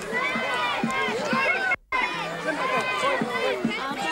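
Crowd chatter: many voices talking and calling at once, none standing out, with a brief gap of silence a little before halfway where the sound drops out.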